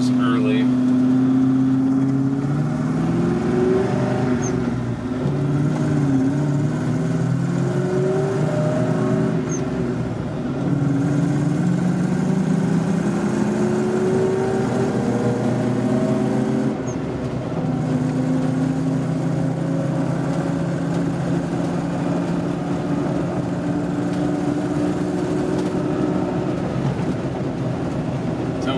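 The Defender 90's swapped-in 4.0-litre V8 pulling through the gears of the manual gearbox, heard from inside the cabin. Its pitch climbs in stretches and falls at the shifts, with a clear drop about two-thirds of the way in, then runs at a steady cruise.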